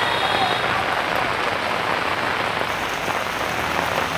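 Heavy rain pouring down, a dense and steady hiss of water on hard surfaces.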